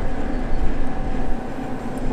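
Wind buffeting a handheld camera's microphone high up in the open air: a steady, loud low rumble with no other distinct sound.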